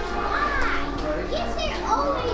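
Children's voices, high-pitched chatter with rising and falling squeals, over a bed of other voices and soft music.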